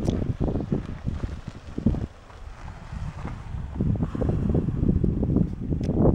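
Wind buffeting the microphone in uneven gusts, heavier in the second half. Under it is the low sound of a Ford sedan moving slowly on a sandy dirt track.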